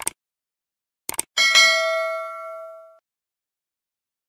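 Subscribe-animation sound effects: a click at the start, two or three quick clicks a little after a second in, then a bright notification-bell ding that rings out and fades over about a second and a half.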